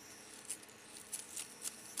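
Faint scattered clicks and light rustling of fingers handling tying thread and materials on a fly held in a fly-tying vise, about five soft ticks spread over the second half.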